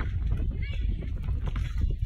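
Wind buffeting the microphone, a heavy low rumble that goes on throughout, with faint voices in the distance.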